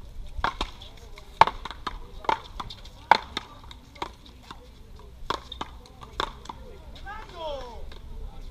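Paddleball rally: a rubber ball smacked back and forth between solid paddles and the concrete wall, about nine sharp hits spread over six seconds. A short squeak follows near the end.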